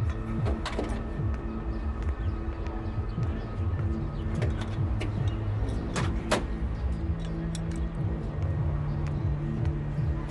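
Background drama score of sustained tones over a low pulse, with a few sharp clicks or knocks; the loudest two come close together about six seconds in.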